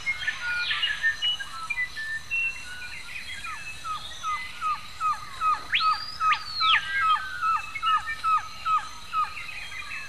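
Rainforest birds calling: a run of short down-slurred notes repeated about twice a second through the second half, with a loud whistle that rises and falls about six seconds in. Scattered short chirps and a faint steady high tone lie beneath.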